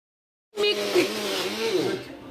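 Electric kitchen mixer grinder running, starting suddenly about half a second in after a moment of silence, with a woman's voice faintly over it.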